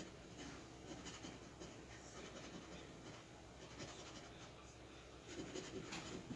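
Faint, irregular scratching as a scratch-off lottery ticket's coating is rubbed off, a little louder near the end.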